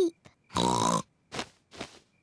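A cartoon pig character's snort, about half a second long, followed by two short, soft breathy puffs.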